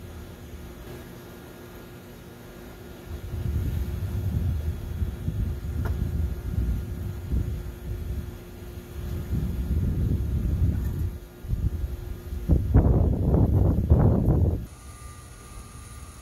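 Low, uneven outdoor rumble that swells in about three seconds in and rises and falls, loudest just before it cuts off a little before the end.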